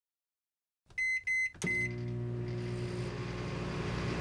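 Audio logo sting: silence for about a second, then three short high electronic beeps like a microwave oven's, the third landing with a sharp hit, then a held low chord that carries on.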